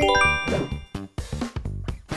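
A bright chime sound effect: a quick run of bell-like tones that start together and ring out, marking the countdown timer running out. Background music with a steady beat carries on under it.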